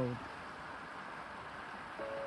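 Steady tyre and road noise inside a moving car on a wet, slushy road: an even hiss with no engine note standing out.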